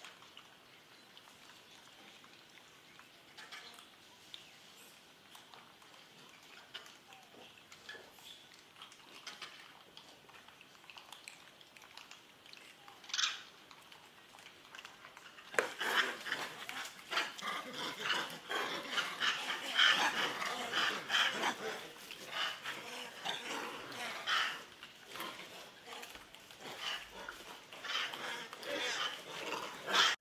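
Animal calls: a few single calls over quiet background for about the first half, then from about halfway a dense, irregular run of many short calls.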